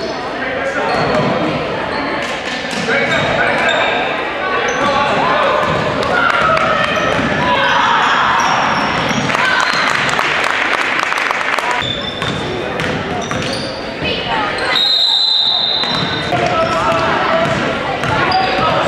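Basketball game sounds in a gym hall: a ball dribbling on the hardwood, sneakers squeaking, and spectators shouting and cheering, rising to a louder cheer about eight seconds in. A short, shrill referee's whistle blast sounds about fifteen seconds in.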